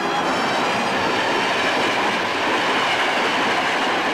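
Passenger train hauled by an electric locomotive passing at speed: a steady rushing noise of wheels on rails.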